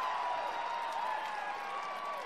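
Several people's voices calling out in long, drawn-out shouts over a noisy, crowd-like background.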